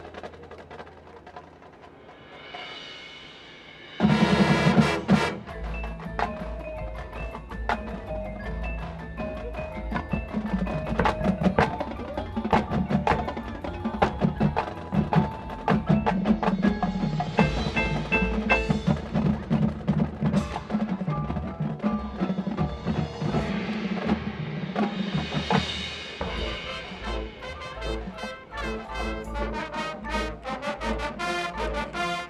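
Marching band percussion section playing: front-ensemble mallet instruments (marimbas and vibraphone) with drumline and bass drums. A soft swell opens, a loud hit comes about four seconds in, and a driving rhythm of drum strokes, pitched mallet notes and low bass-drum pulses follows.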